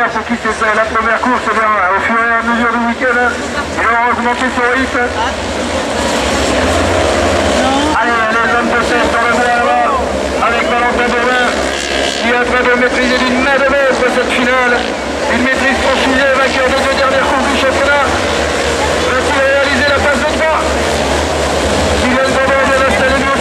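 Autocross race car engines revving on a dirt circuit, their pitch repeatedly rising and falling as they accelerate and shift, mixed with voices in the crowd.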